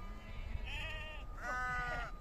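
Sheep bleating twice: a higher, wavering call about half a second in, then a lower, steadier call near the end.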